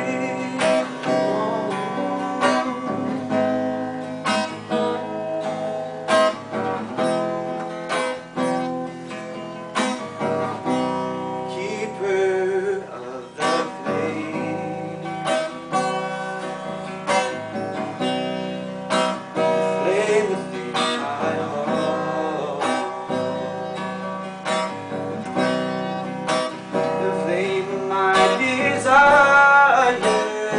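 Acoustic guitar strummed steadily in a regular rhythm, chords ringing between strokes, with a man's voice singing along in places, loudest near the end.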